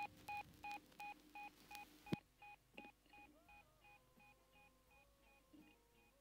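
Electronic beep of two tones at once, repeated about three times a second and fading away like an echo tail, with a few faint sliding tones about halfway through.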